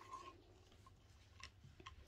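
Near silence, with two or three faint clicks in the second half as the metal tufting gun is handled and set down flat.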